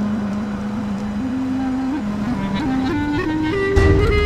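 Background score music: a held low note, then a melody climbing in short steps through the second half, ending on a deep low hit just before the end.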